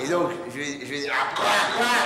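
A man's wordless vocal noises into a handheld microphone: exaggerated comic sounds, rising to a strained cry near the end.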